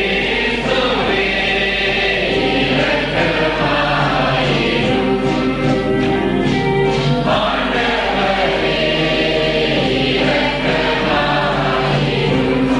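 A choir singing a hymn into microphones, with long held notes that change pitch every few seconds.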